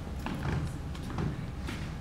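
A few faint knocks and clicks from actors moving about on a stage set, over a low steady hum.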